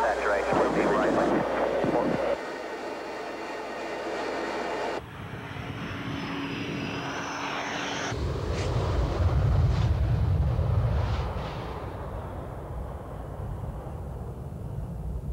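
Brief radio speech over cockpit noise, then, after two abrupt cuts, F-15 Eagle jet noise: a high whine, then a deep rumble that swells about nine seconds in and fades away.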